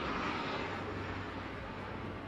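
A steady rushing noise over a low, even hum, a little louder in the first second and then easing off slightly.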